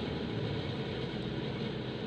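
Steady background noise with no distinct event: ambient hum between sentences.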